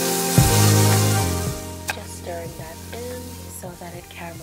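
Chopped shallots and tomatoes sizzling in hot oil in a frying pan, the hiss fading over the first couple of seconds, under louder background music.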